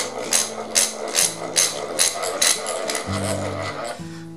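Bench vise being cranked shut on a steel plate, with a regular click a little more than twice a second that stops about three seconds in, over quiet background music.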